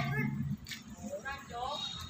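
Short high-pitched vocal calls: one ending about half a second in and another wavering one a little over a second in.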